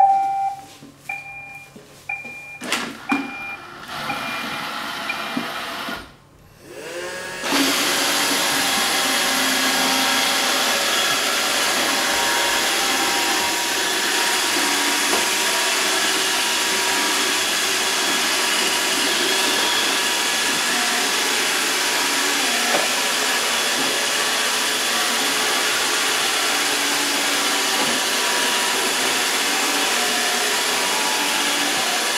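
iRobot Roomba 637 robot vacuum starting up with a few short beeps and clicks. After a brief dip about six seconds in, its vacuum motor and brushes run steadily as it cleans the hard wooden floor.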